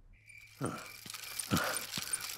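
Quiet cartoon night-time sound effects: faint high chirps repeating through a soft background, with two short falling squeaks, about half a second and a second and a half in.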